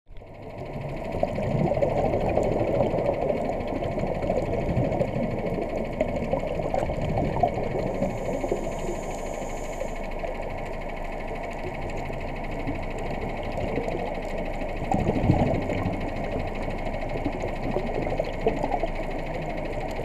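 Steady crackling underwater noise picked up by a camera in a waterproof housing, with a brief swell about three-quarters of the way through.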